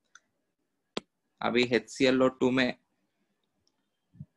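One sharp click about a second in, a stylus tapping the tablet's glass screen, with a fainter tick just before it; then a man says a few words in Hindi.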